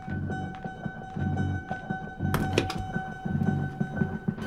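Suspenseful drama underscore: two steady high tones held over low notes that repeat about once a second, with a single thud a little past two seconds in.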